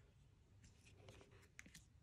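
Near silence, with a few faint light taps and paper rustles as small card-stock cards are set down and slid on a cutting mat.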